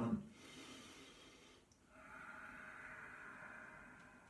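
A man's controlled qigong breathing: a breath in of about a second and a half, then a slower breath out of about two seconds, the out-breath drawn out longer than the in-breath.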